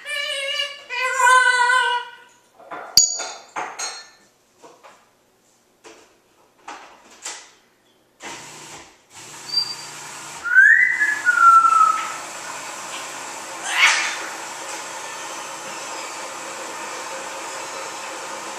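African grey parrot whistling and vocalizing: a pitched, several-toned call at the start, then scattered short clicks and chirps, and a whistle that rises and then falls about ten seconds in. A steady hiss comes in from about eight seconds on.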